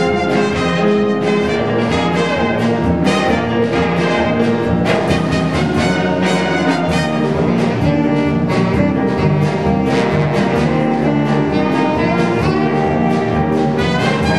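A small live variety band playing a march: trumpet, saxophone and trombone over a drum kit keeping a steady beat.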